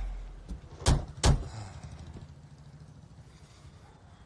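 Two car doors slammed shut about a second in, one right after the other, as a music track fades out.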